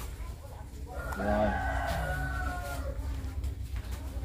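A rooster crowing: one drawn-out crow of about two seconds, starting about a second in.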